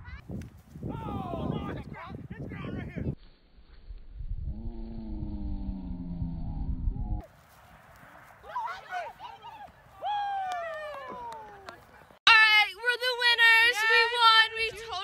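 Shouts, whoops and laughter of people playing a game outdoors, in several short clips joined by abrupt cuts, with wind rumbling on the microphone. Near the end a much louder girl's voice sounds close to the microphone.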